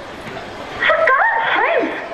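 A person's voice with wide rising and falling pitch slides, starting just under a second in after a quieter opening.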